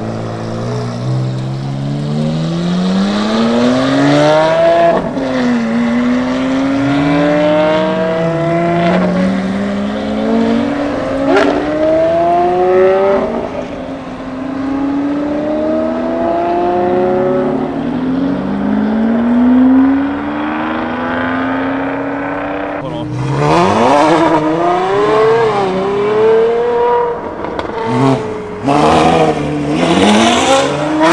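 V12 supercars, among them a Lamborghini Aventador and a Ferrari 599, accelerating hard away one after another, each engine revving up through the gears with the pitch climbing and dropping back at every upshift. A new car pulls away about two-thirds of the way through, and sharp crackles come near the end.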